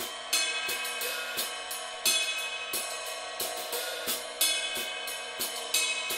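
Drum kit played in a steady groove, with a continuous bright wash of ridden cymbal over regular drum strokes and louder cymbal accents about every two seconds.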